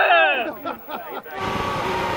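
A loud, falling shout of celebration, then from about one and a half seconds in the steady engine note and wind noise of a SuperLeague Formula car heard from its onboard camera, running at an even, easy speed.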